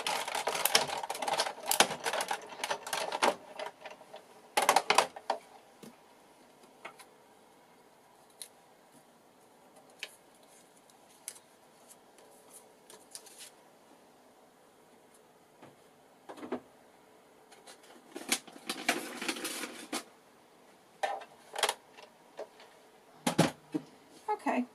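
Sizzix Big Shot die-cutting machine being hand-cranked, its plate sandwich rolling through with a rapid run of clicking and rattling for the first few seconds. After that come scattered clicks and clatter of acrylic cutting plates and paper being handled. A few knocks near the end.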